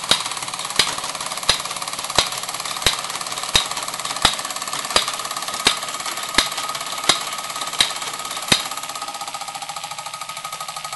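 Fleischmann 1213 overtype model steam engine running briskly and belt-driving tinplate workshop models: a rapid steady rattle of the engine, line shaft and belts, with a thin steady tone. A sharp click repeats about every three-quarters of a second and stops a little before the end.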